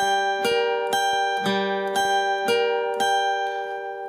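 Acoustic guitar picking a slow arpeggio: an open G string followed by notes fretted high on the B and high E strings, about two plucks a second, each note left ringing into the next. The open G is struck again about a second and a half in.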